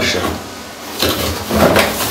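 Cardboard packaging being handled: the box's cardboard insert sliding and scraping as parts are pulled out, in a few rustling strokes about a second in and again near the end.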